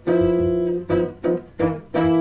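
Hollow-body archtop guitar playing rootless jazz chord voicings of a G blues: a chord held for about a second, then a few short, clipped chords.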